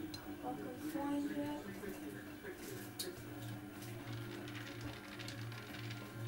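Electrolux EW1006F washing machine draining: a low drain-pump hum that, from about three seconds in, starts pulsing roughly twice a second as the water in the drum runs down.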